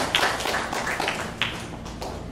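An audience applauding, the clapping dying away near the end.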